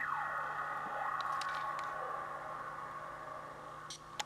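A sustained electronic tone that starts suddenly with a falling sweep in pitch, then holds and slowly fades.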